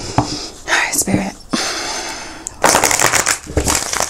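A deck of tarot cards being shuffled by hand: several spells of papery rustling and fluttering, the longest and loudest a dense riffle of about a second near the end.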